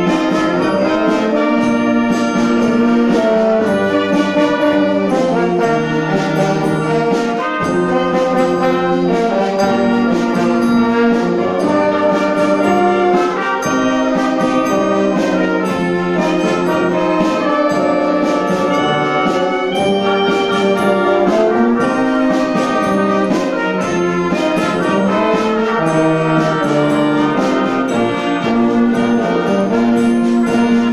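A police wind band of saxophones, trumpets and tuba playing a Christmas carol, with a melody over held chords going on without a break.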